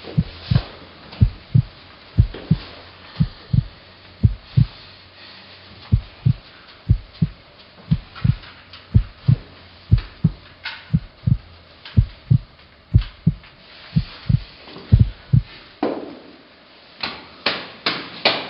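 Heartbeat sound effect: low thuds in lub-dub pairs, about one beat a second, which stop about two seconds before the end and give way to a few sharper knocks.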